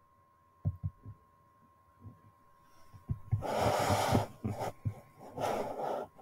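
A person sighing: two long, noisy breaths out, the first about three and a half seconds in and the second near the end, with a few soft low thumps before them.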